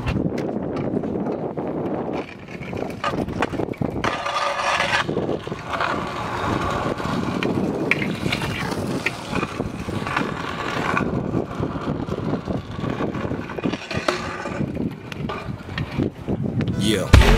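Hard small wheels of stunt scooters and a skateboard rolling over paving and concrete, with scraping grinds along a ledge and sharp clacks of tricks and landings.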